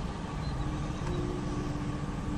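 Steady low rumble of a running motor or distant traffic, with a steady hum joining about half a second in.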